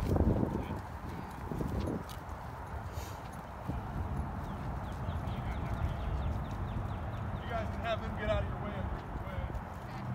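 Footsteps of someone walking over grass and pavement, with a steady low wind rumble on the microphone and faint voices in the distance for about the last two seconds.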